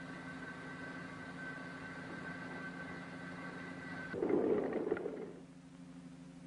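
Steady mechanical hum with a faint high whine on an old film soundtrack. About four seconds in, a louder, rough burst lasts about a second, and the high whine cuts off as it starts.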